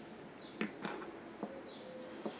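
Faint handling sounds: a few soft taps and rustles as a crochet hook is set down on a table and a cotton crocheted shawl is smoothed flat by hand.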